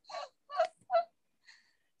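A person's voice making three short, quick vocal sounds about 0.4 s apart, followed by a faint fourth.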